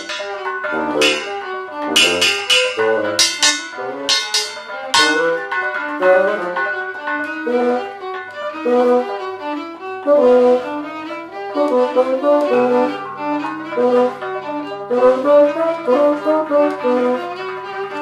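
Free-improvised music for violin, bassoon and percussion. Sharp percussion strikes with ringing decays fill the first five seconds. After that comes a busy stream of short bowed and reed notes, and a low held note enters about halfway through.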